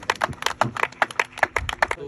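A small group of people clapping by hand: a quick, irregular run of sharp claps.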